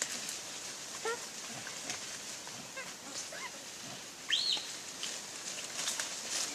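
A few short, pitched animal calls over a steady high hiss. The loudest is a single note about four seconds in that rises and then falls.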